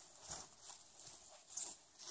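Faint, scattered rustles and soft steps: a person shifting about on forest undergrowth beside a plastic tarp, with a few brief crinkles.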